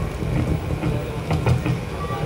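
Steady low rumble of an outdoor event with faint, indistinct voices chatting, and a couple of light knocks about one and a half seconds in.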